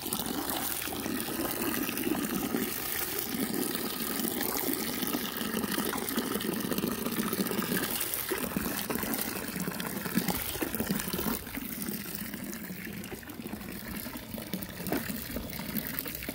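A stream of water from a garden hose pouring steadily into a plastic bucket as it fills, a continuous splashing that turns a little quieter in the last few seconds.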